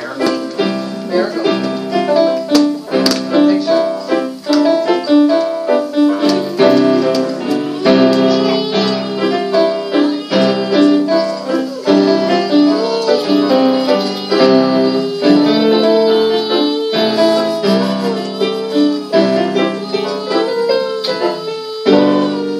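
Two electronic keyboards, one of them a Casio, played together as a student and teacher duet: a piece in steady changing chords with a piano sound.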